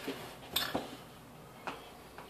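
A few light clicks of a flat-blade screwdriver against the wheel rim and rubber as it levers a solid tire's bead into the rim, the sharpest about half a second in.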